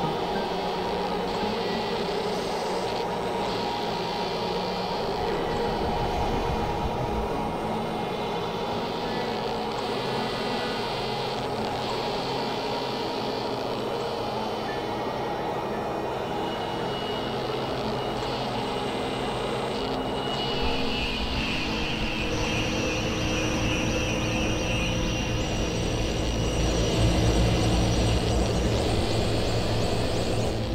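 Experimental electronic drone music: layered, sustained synthesizer tones over a noisy wash. About two-thirds of the way through, a new high tone comes in and a low rumble builds, getting louder toward the end.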